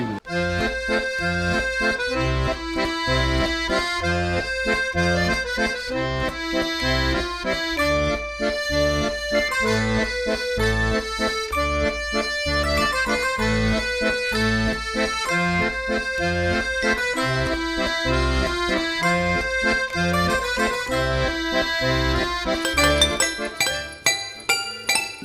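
Accordion playing a lively folk tune over a steady bass line that pulses about twice a second; it starts abruptly.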